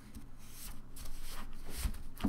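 Cardstock pages of a handmade paper scrapbook folio rustling and sliding against each other as they are handled and turned over, with a louder scrape about a third of the way in and another, with a soft thud, near the end.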